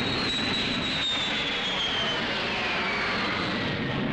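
Jet aircraft passing overhead: a steady rushing roar with a high whine that falls in pitch as the plane goes by.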